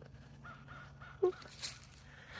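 A single short, high-pitched "boop" spoken about a second in, over faint outdoor background.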